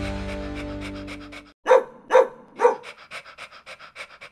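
A music chord fades out, then a dog barks three times about half a second apart and pants rapidly.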